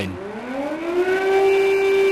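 Air-raid siren blaring, its pitch rising for about the first second and then holding steady.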